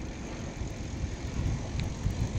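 Wind rushing over the microphone with rumble from a bicycle being ridden, the low buffeting getting louder in the second half.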